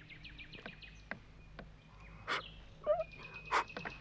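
Mostly quiet, then two short puffs of breath, about two seconds in and just before the end, the second a hard blow into a sleeping dog's ear.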